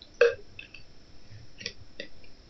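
A single brief throat noise from a person about a quarter second in, then a few faint clicks over low room noise.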